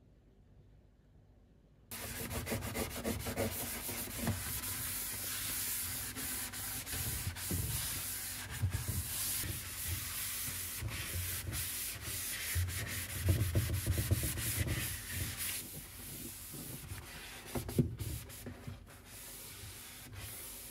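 A cloth scrubbing and wiping the plastic inside wall of a refrigerator, a steady scratchy rubbing with small bumps. It starts suddenly about two seconds in and eases off to softer, patchier strokes in the last few seconds.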